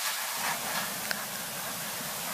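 A steady, even hiss with no speech, with a faint short tick about a second in.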